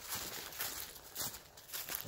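Footsteps walking through dry leaf litter on a forest floor: a series of soft, irregular crunches and rustles.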